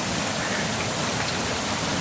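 Fast-flowing river water rushing over rocks in rapids, a steady even rush of water noise.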